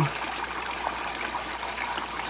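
Water running steadily down a recirculating sluice box over its dream mat and pouring off the end into the tub below.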